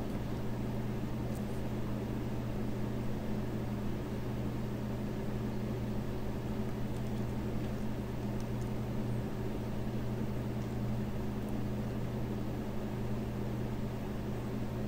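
A steady low hum with a faint even hiss, unchanging throughout.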